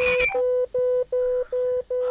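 Telephone line tone coming through on the studio phone-in line: a click, then a steady mid-pitched beep repeating about two and a half times a second, with the caller not yet speaking.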